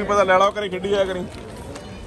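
A person's voice calling out for about a second, the last part held at one pitch, then the murmur of a crowded public space.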